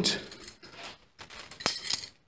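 A metal teaspoon clinking lightly, with one sharp click about one and a half seconds in.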